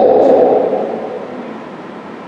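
A man's raised preaching voice trailing off, its last word fading into the hall's reverberation over about a second and a half, then a brief quiet pause.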